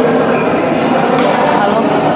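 Badminton doubles rally in a large hall: rackets striking the shuttlecock a couple of times and court shoes squeaking on the floor, with voices in the background.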